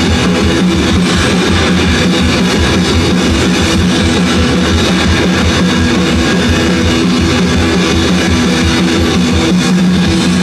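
Live rock band playing loud and steady, with distorted electric guitars and a drum kit.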